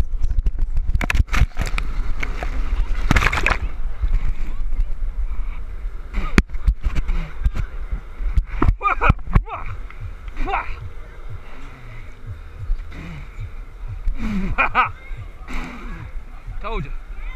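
A person splashing and sloshing through a wet foam pit, with a steady low rumble and sharp knocks from wind and handling on the camera's microphone. Short shouts from voices come through in the second half.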